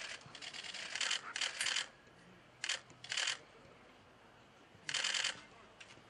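Camera shutters firing in quick continuous bursts: about six short trains of rapid clicks, several close together at first, then one a little after 3 seconds and one near 5 seconds.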